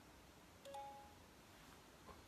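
A brief, faint electronic chime: a click and two steady tones sounding together for about half a second, beginning just over half a second in, otherwise near-silent room tone.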